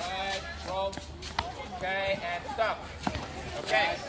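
Children's voices calling out in short, high-pitched shouts during a ball drill, with two sharp knocks of a rugby ball hitting the paved ground, about a second and a half and three seconds in.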